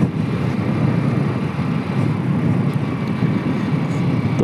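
Hero Splendor single-cylinder four-stroke motorcycle riding at a steady speed, its engine running under a loud, steady rush of wind on the microphone.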